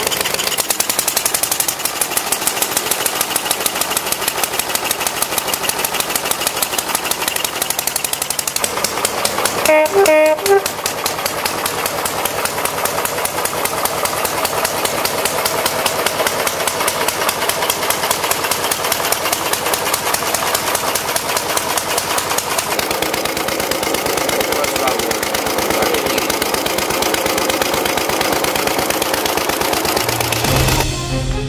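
Vintage Triumph Model H air-cooled single-cylinder motorcycle engine running steadily with rapid, even firing pulses. A brief pitched sound stands out above the engine about ten seconds in.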